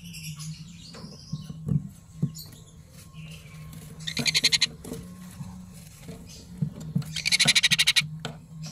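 Sun conure chick giving rapid, pulsed begging calls in two bursts, about four seconds in and again near the end, each lasting under a second, with a few fainter chirps before them.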